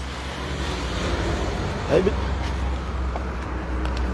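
Steady low rumble of motor vehicles and traffic, with a short spoken word in the middle.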